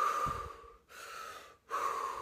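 A woman breathing deeply and forcefully through the mouth in a rapid deep-breathing exercise, near-hyperventilation breaths. Three breaths follow in quick succession, the middle one quieter.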